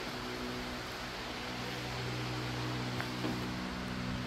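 Steady electric hum over a hiss of moving air, typical of a pedestal shop fan running, with a faint click about three seconds in.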